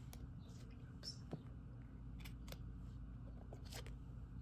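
Oracle cards being handled: a few light clicks and soft slides as a card is lifted off the deck, over a steady low hum.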